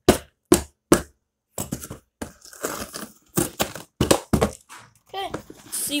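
Cardboard shipping box being torn open by hand: a run of sharp rips and thumps, about two a second at first, with crinkling in between.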